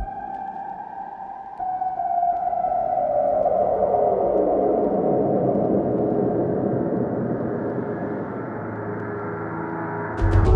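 Ambient electronic music: the deep bass stops at the start, leaving a hissy synthesizer wash that swells about one and a half seconds in and spreads lower in pitch over the next few seconds.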